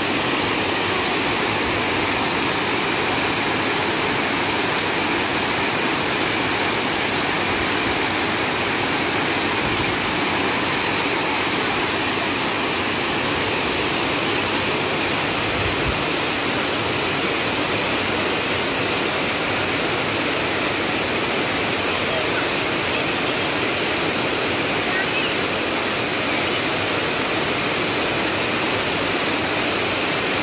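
Water rushing steadily through a dam's open spillway gate and pouring onto the rocky riverbed below.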